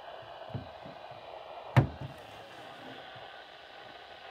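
A steady low hiss from a Midland WR120 weather radio, with one sharp knock about two seconds in as the radio is handled and its buttons pressed to change channels.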